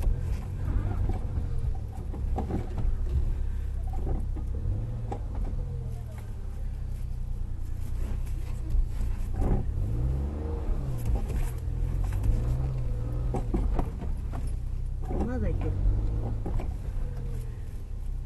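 Suzuki Jimny's engine heard from inside the cabin, its pitch rising and falling several times around the middle as it is worked through thick mud.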